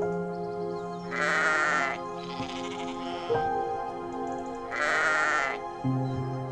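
Sheep bleating twice, two long wavering calls about a second in and about five seconds in, over soft background music with held notes.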